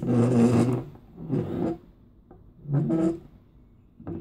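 Plastic toy parts rubbing and scraping as a transforming-robot toy is handled, in three short rasping bursts about a second apart.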